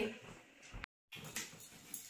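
A golden retriever making faint whimpering sounds. A short stretch of dead silence about a second in breaks the sound.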